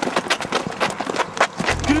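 A scuffle: quick, irregular footsteps and scrapes as a man is grabbed and shoved toward a car.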